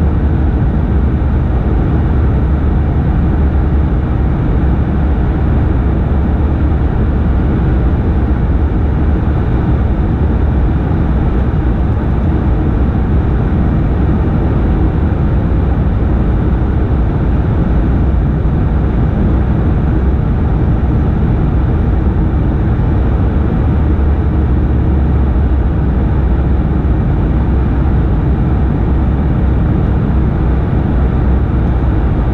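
Steady cabin noise inside a Bombardier CS100 airliner on final approach: its Pratt & Whitney PW1500G geared turbofan engines and the rushing airflow as one unbroken roar, heaviest in a deep low rumble, with no change in level.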